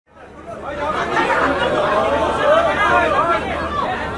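Many voices talking over one another in a crowd, no single speaker clear, fading in during the first second.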